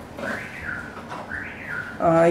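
A bird chirping: several short, high chirps that rise and fall in pitch.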